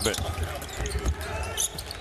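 A basketball dribbled on a hardwood court, a run of repeated low thuds.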